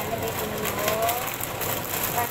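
Clear plastic bag of dried pancit canton noodles crinkling as it is handled, over a steady hiss from the pan on the stove.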